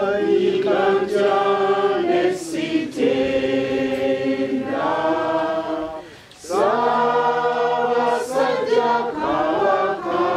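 A group of voices singing together in long held phrases, with a short pause for breath about six seconds in.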